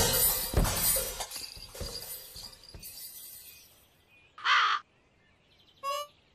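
A crow cawing once, loud and short, about four and a half seconds in. Before it, a noisy clatter with a couple of low thumps fades away over the first few seconds, and a few short musical notes come in near the end.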